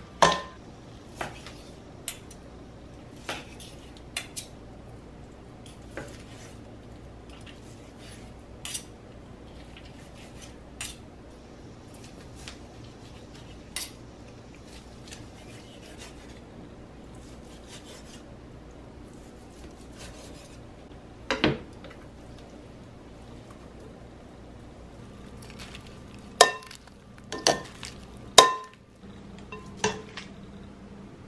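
Kitchen clatter of food preparation: metal salad tongs clinking against a ceramic bowl and a knife cutting on a wooden board, as scattered single clicks and clinks over a quiet room. A few louder knocks come close together near the end.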